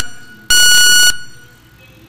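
Electronic speaking-time timer giving a high, steady beep: one beep ends right at the start, and a second starts about half a second in and lasts about half a second before fading out. It signals that the speaker's allotted question time has run out.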